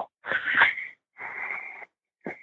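Two breathy sounds of a person breathing into a microphone, each under a second long.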